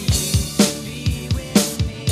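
Electronic drum kit played along to a pop-rock backing track: a steady run of kick, snare and cymbal hits, about three to four strokes a second, over the song's sustained bass and instruments, with no singing.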